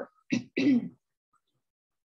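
A woman clearing her throat: two short rasps within the first second.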